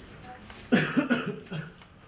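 A person coughing: a quick run of two or three coughs starting under a second in.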